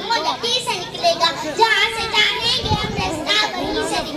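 A girl delivering a speech in Urdu into a microphone, speaking continuously.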